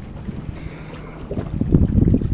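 Wind buffeting the microphone over open water, a steady low rumble. About halfway through, a run of low knocks and bumps joins it.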